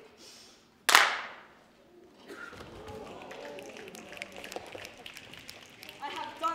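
A single sharp, loud thud about a second in, a performer's body dropping onto the stage floor, with a short ringing decay. Faint murmuring voices follow.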